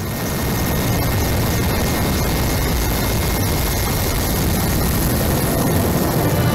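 Helicopter rotor and engine noise, a steady dense rush with a heavy low rumble.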